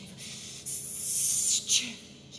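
A soprano voicing unpitched hissed 'shh' sounds as an extended vocal technique. A soft hiss at first swells into a loud one lasting about a second, then a short sharp one near the end.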